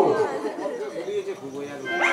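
Only speech: quiet background voices talking.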